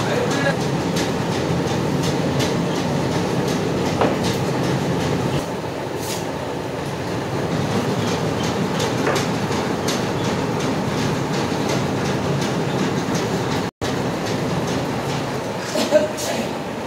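Borewell service truck with its pipe reel: a steady machine noise with light, irregular clicks and knocks running under it.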